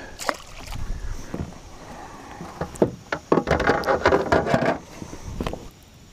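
Gear being handled in a plastic fishing kayak: several sharp knocks against the hull, with a stretch of rustling and scraping in the middle.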